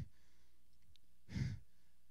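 A single short breath, like a sigh, from the preacher into a handheld microphone about a second and a half in, over a faint steady hum from the sound system.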